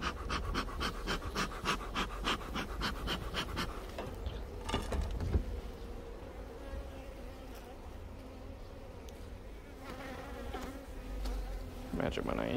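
Honeybees buzzing in a steady hum over an opened hive. For the first four seconds a fast rhythmic pulsing, about five beats a second, sounds over the buzz.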